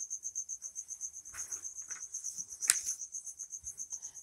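Steady, high-pitched pulsing chirp of an insect, about nine pulses a second, behind a pause in speech. A single sharp click a little before three seconds in.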